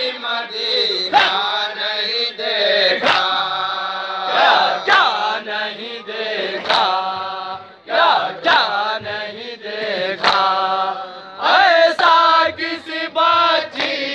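Men chanting a noha, a Shia lament, in unison and loud, with sharp chest-beating (matam) strikes falling in rhythm roughly every two seconds.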